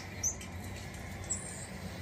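Two short, high, bird-like chirps from a nature video for cats playing through a television's speakers, over a low steady hum.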